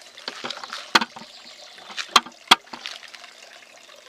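Hands working a radish plant out of a small plastic pot of potting soil: a low crackling rustle of soil, with three sharp clicks, one about a second in and two close together a little after two seconds.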